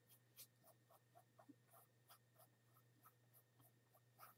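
Very faint strokes of a small paintbrush on canvas, a string of light dabs about three to four a second, over a low steady hum.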